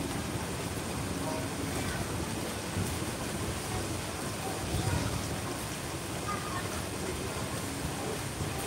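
Water splashing steadily into a koi pond from an inlet or fountain, an even rushing hiss.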